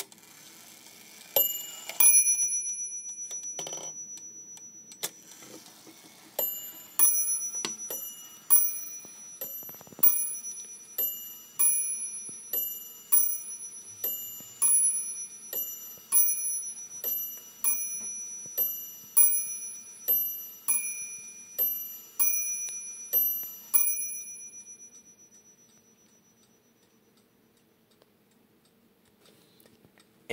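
Hampton crystal regulator mantel clock with a Franz Hermle movement striking on its two bells, muffled a little by the closed glass door. A couple of first strikes are followed by a long, even run of bell strikes a little under a second apart, which stop about 24 seconds in.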